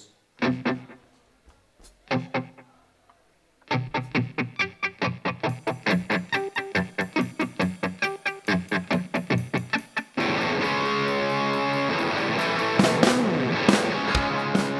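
Punk rock song intro on a lone electric guitar: a few single notes, then a fast riff of picked notes, about five a second. About ten seconds in, the full band of drums, bass and guitars comes in loud and distorted, with harder drum hits near the end.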